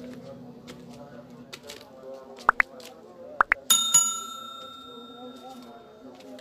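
Subscribe-button animation sound effect: two pairs of quick clicks, then a notification bell ding that rings out and fades over about two seconds.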